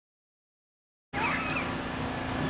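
Dead silence, then about a second in the outdoor ambience of a rodeo arena cuts in suddenly: a steady background of crowd and open-air noise, with one short rising high-pitched call just after it starts.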